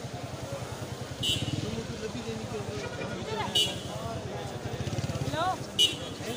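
Busy street traffic: a vehicle engine running low and steady under crowd voices. Three short, shrill whistle blasts cut through, about a second in, midway and near the end.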